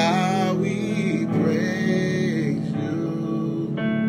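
A man singing a slow worship song over backing music.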